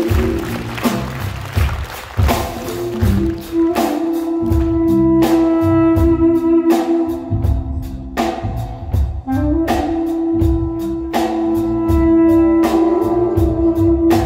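Duduk playing long held notes over a live drum kit and band in an ethno-jazz piece: one sustained note from a few seconds in, then a second that slides up into pitch about halfway through and is held to the end, with steady cymbal and drum strokes underneath.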